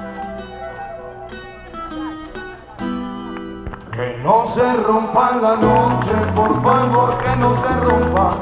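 Salsa band music between vocal lines: a softer passage of held chords, then about four seconds in the band comes in louder and the bass takes up a steady repeating pattern.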